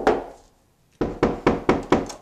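Knuckles rapping quickly on a closed interior door, about six knocks a second, in two runs separated by a brief dead-silent gap.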